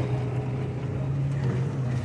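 Engine of an open Maruti Gypsy safari jeep running steadily as it drives along a forest track, heard from on board as a low, even hum.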